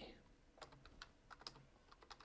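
Faint, irregular clicks of keystrokes on a computer keyboard, several a second, as text is typed.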